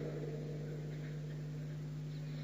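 Steady low electrical hum with a faint background hiss, heard in a pause between spoken words.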